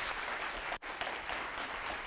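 Audience applauding steadily, with one very brief break a little under a second in.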